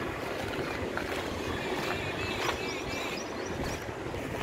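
Wind rumbling on the microphone over a steady outdoor background noise, with a few faint high chirps in the second half.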